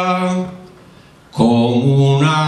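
A male bertsolari singing an unaccompanied Basque verse. A held note fades out about half a second in, and after a short pause he starts the next line.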